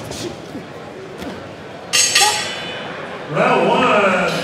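Boxing ring bell struck about two seconds in, ringing out and fading to mark the end of the round, over low hall background noise. Louder voices come in near the end.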